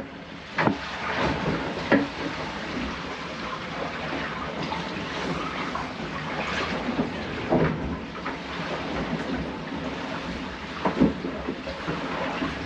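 Steady rushing noise of a sailing catamaran working through rough seas, heard from inside the hull, with a few short knocks and clunks as bilge hoses and fittings are handled.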